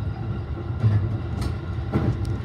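Electric passenger train running at speed, heard from inside the front car: a steady low rumble with a faint motor hum and one sharp click about one and a half seconds in.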